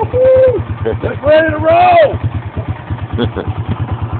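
A four-wheeler's (ATV's) small engine idling steadily with an even low pulse. A high-pitched voice calls out twice over it in the first half.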